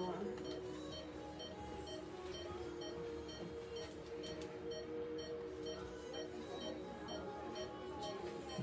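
Surgical patient monitor beeping with each heartbeat of the anaesthetised dog, short high beeps about two a second, over background music.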